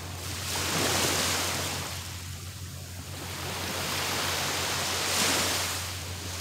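Small waves breaking and washing up a sandy beach in two surges of hiss, the first about a second in and the second near the end.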